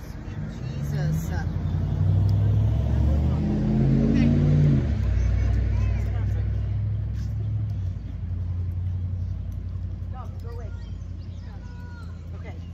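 An SUV driving past. Its engine note rises as it approaches, drops sharply as it goes by about five seconds in, then fades away.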